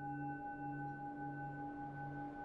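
Singing bowl sounding a sustained D tone, ringing steadily with a slow throb in its low hum, a little under two pulses a second.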